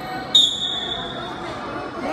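Referee's whistle blown once about a third of a second in: a single high, steady blast lasting about a second, signalling the start of the wrestling bout.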